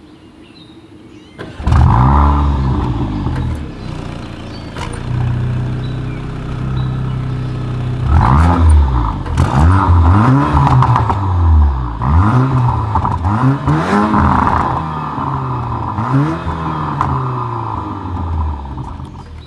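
2024 Porsche Macan's turbocharged 2.0-litre four-cylinder engine heard at the dual exhaust tips. It starts up about a second and a half in with a brief flare, settles to a steady idle, then takes a series of quick throttle revs, each rising and falling back, over the second half.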